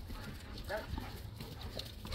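Labrador retrievers scrambling about on bare dirt, with a short faint vocal sound less than a second in.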